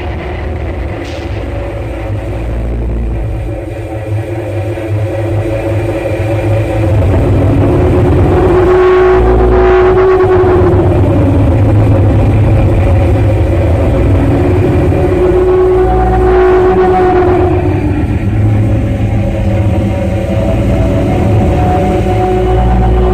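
Live experimental noise music: a loud, sustained electronic drone with held tones over a low rumble, growing louder about seven seconds in.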